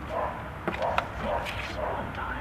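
A dog barking repeatedly, a short bark about every half second, with a few sharp clicks from the airsoft rifle being handled.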